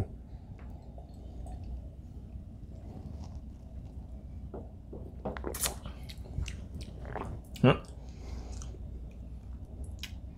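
Faint mouth and lip sounds of neat bourbon being sipped and held on the tongue, over a low room hum. About five and a half seconds in, a glass is set down on the bar top with a short knock, and a brief vocal sound follows near eight seconds.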